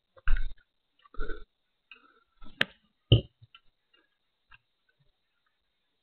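Handling noise from a handheld pen camera's microphone as the camera is moved about: a few irregular scuffs and knocks, a sharp click about two and a half seconds in followed by the loudest knock, then only faint ticks.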